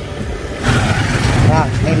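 Motorcycle engine running as the bike rides along a street, with wind and road noise; the sound grows louder about two-thirds of a second in.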